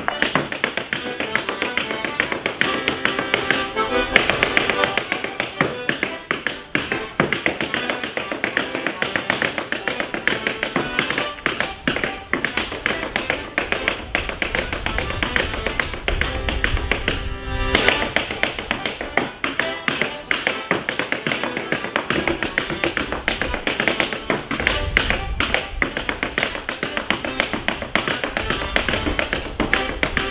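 Wooden-soled clogs rapidly beating out a hornpipe clog-dance routine on a stage floor: a dense, fast stream of taps. An accordion plays the hornpipe tune alongside.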